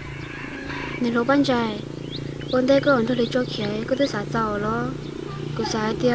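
A woman speaking in bursts, with a steady low hum beneath.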